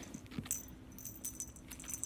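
Metal fittings of a small pet harness jingling lightly and clicking as the harness is worked onto a wriggling ferret, in short intermittent bursts.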